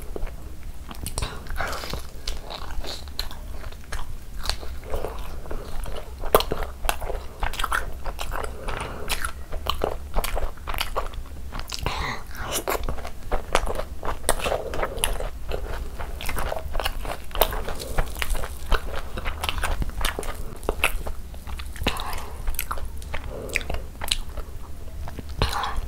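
Close-miked eating: biting into and chewing pieces of chicken in spicy red curry, with many short, wet mouth clicks and smacks at an irregular pace.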